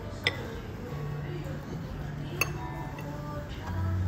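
A metal spoon clinking against a ceramic bowl while scooping fried rice: two sharp clinks, one near the start and one a little past halfway.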